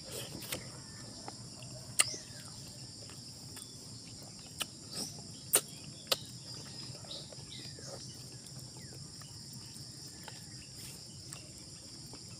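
A steady high-pitched insect chorus runs throughout. Over it come a few sharp mouth smacks and clicks from eating by hand, the loudest about two seconds and five and a half seconds in. Now and then there are short falling bird chirps.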